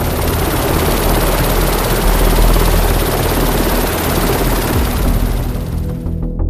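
Helicopter running at close range: a loud, steady rush of rotor and turbine noise over a low engine hum.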